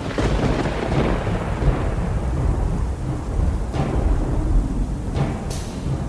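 Thunder rolling into a long low rumble over steady rain, as a storm sound effect, with a couple of deep drum hits in the second half.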